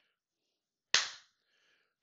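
A single sharp click about a second in, dying away within about a third of a second; otherwise near silence.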